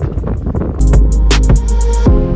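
Wind buffeting the microphone, then background music with held, sustained notes comes in just under a second in.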